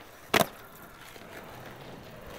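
Skateboard landing a flip trick on concrete: one sharp clack of wheels and wooden deck slapping down about half a second in, then the wheels rolling on the concrete.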